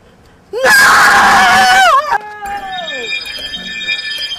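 A woman screaming loud and high for about a second and a half, ending in a falling cry. Then background music with long held keyboard tones comes in.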